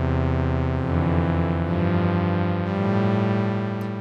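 OB-Xd virtual analog synthesizer plugin playing its Warm Pad preset: sustained pad chords, changing twice.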